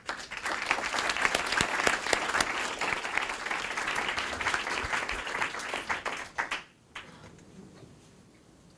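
A small audience applauding for about six and a half seconds, then dying away to quiet room tone.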